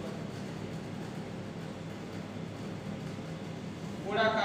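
Steady low hum with an even hiss, the constant background noise of the room or recording, with no distinct events.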